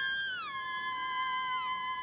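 Electric violin holding long, high, steady notes, with smooth downward slides in pitch, about half a second in and again near the end, sounding over a held note.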